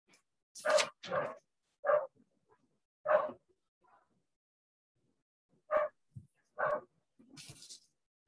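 A dog barking: six short barks, irregularly spaced, with a pause of about two seconds midway.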